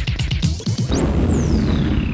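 Dance megamix music loaded with DJ effects: a beat, then a sudden hit about halfway through, followed by a high whistling tone that sweeps steadily down in pitch.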